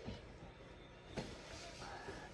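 Quiet room with two faint, brief knocks, a soft one at the start and a sharper one a little past a second in.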